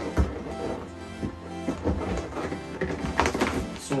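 Background music with steady low held notes.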